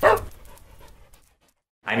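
A short dog-bark sound effect in a logo sting. It falls in pitch and fades away within about a second, and is followed by a moment of silence.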